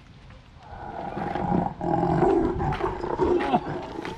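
Recorded tiger roar played from a tiger statue at a mini-golf hole: a long, rumbling growl with a short break a little before the middle.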